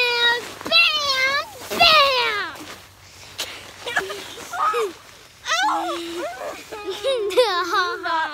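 Children's high-pitched wordless squeals and shrieks during rough play, with a long held cry in the second half.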